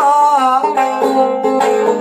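A man sings a long wavering note of a Punjabi Sufi kalam while plucking a one-string tumbi in short repeated notes.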